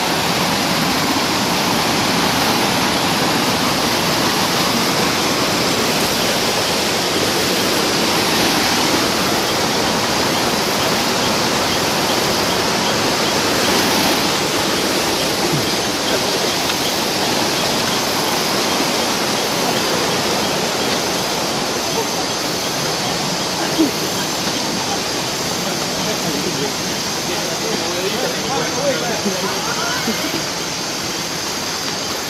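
A loud, steady rushing noise with no rhythm or breaks, like running water or a dense chorus of night insects.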